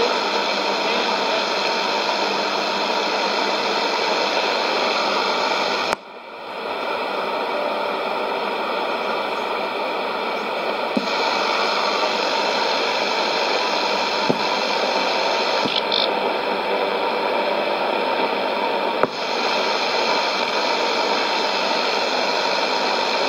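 Sony ICF-2001D shortwave receiver on 11660 kHz giving steady static hiss with no programme audio. About six seconds in the hiss drops suddenly and builds back over a second or two, and there are a couple of faint clicks later on.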